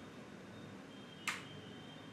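Quiet room tone in a pause between speech, with one brief soft hiss-like noise a little over a second in.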